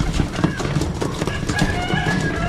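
Racing pigeons pecking on a wooden loft board, a rapid irregular patter of taps, with wing flaps as they jostle.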